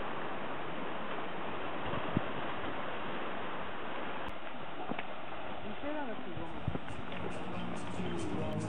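Steady wash of sea surf against a rocky shore, heard as an even rushing noise. About six seconds in, a voice and then music come in over it.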